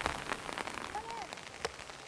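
Rain falling, with scattered drops ticking sharply close to the microphone.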